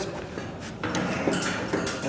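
Light metal clicks and scraping as a steel pipe wrench is fitted around a doorknob and turned, with a few sharper clicks about a second in.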